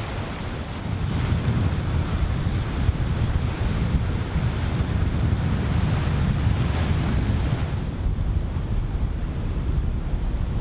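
North Sea surf breaking and washing on the shore, with wind rumbling on the microphone. The higher hiss of the surf thins about eight seconds in.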